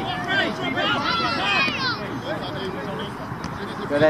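Several voices of players and touchline spectators at a youth football match calling and talking over one another, with some high-pitched shouts in the first half and a lower babble after.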